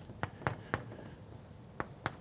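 Chalk on a blackboard while a formula is written: about four short, sharp chalk taps, three in the first second and one near the end.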